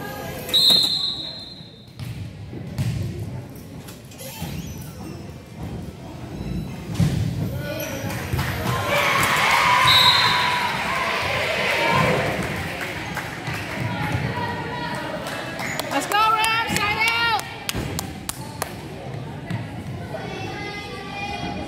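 Referee's whistle, then a volleyball rally: the ball thumping off players' arms and hands and the hardwood gym floor, with reverberation. A second short whistle comes about halfway through as spectators and players cheer and shout, and more shouting follows a few seconds before the end.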